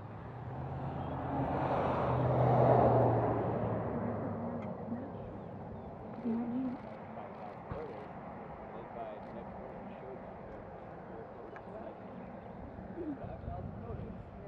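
A motor vehicle driving past, its engine hum and road noise growing louder to a peak about two to three seconds in, then fading away.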